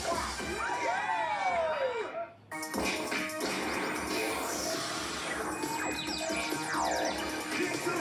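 Cartoon sound effects with gliding whistle-like tones, then, after a brief drop about two and a half seconds in, a busy channel-bumper mix of music and crashing sound effects, played through a TV's speaker.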